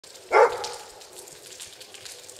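A single short, loud animal call about a third of a second in, over a faint steady hiss.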